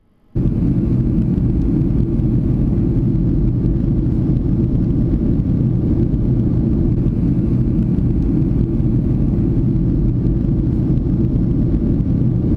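Steady low rumble of a jet airliner's cabin in flight, starting abruptly a moment in and holding unchanged.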